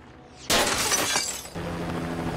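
Glass shattering from a bullet strike on a car window, a sudden crash about half a second in, then breaking glass falling away over the next second.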